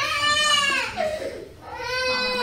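A young child wailing: one long, high cry that rises and falls and fades out about a second in, then a second cry starts near the end.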